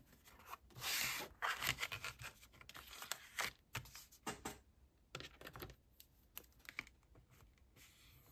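Heavy craft paper being slid and handled on a plastic scoring board: a longer sliding rustle about a second in, then scattered light taps and scratches of paper and tool.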